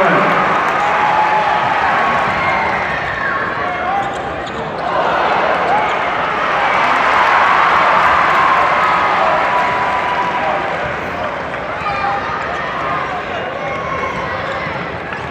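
Basketball being dribbled on a hardwood court under the steady noise of an arena crowd, which swells about halfway through.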